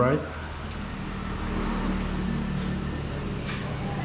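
A steady low mechanical hum under faint room noise, from a machine running in the room.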